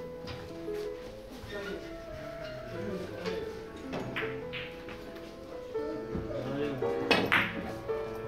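Background music with a melody, with the knock of a cue striking a Russian billiards ball about four seconds in and a louder crack of balls colliding a few seconds later.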